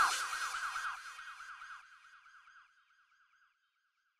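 End of a bassline track: a siren-like synth tone rising and falling about six times a second, fading away within the first two seconds, then silence.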